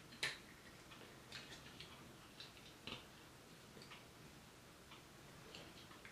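Faint, scattered clicks and taps of the plastic parts of an NBK-01 Scraper transforming-robot toy being handled and set into position, the sharpest about a quarter-second in.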